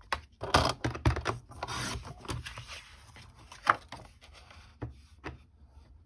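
Card stock being handled on a Fiskars paper trimmer: paper sliding and rubbing against the trimmer and cutting mat, with a sharp click about three and a half seconds in and a few light knocks after it.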